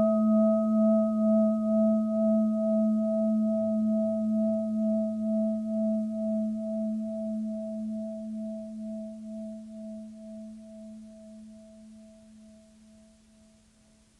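A meditation bowl bell rings on after a single strike, its tone pulsing slowly as it fades away over about thirteen seconds.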